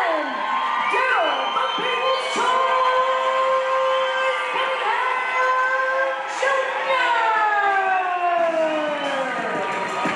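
Boxing crowd cheering and shouting as the winner's arm is raised, with many voices calling out over one another and one long call falling in pitch near the end.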